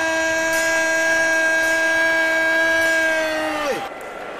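A single steady tone with a clear pitch, held for several seconds, then sliding down in pitch and stopping just before the end.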